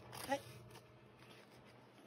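Faint rustling of a plastic mailing envelope being handled as scissors are brought to its edge, after one spoken word.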